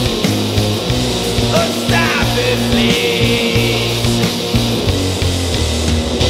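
Instrumental rock passage with no vocals: electric bass guitar playing a moving line of low notes under distorted electric guitar.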